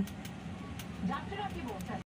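Faint voices talking in the background from about halfway through, over a low steady background noise.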